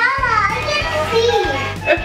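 Dancing toys' built-in electronic music: a steady, bouncy beat with a high, cartoonish voice singing and chattering over it.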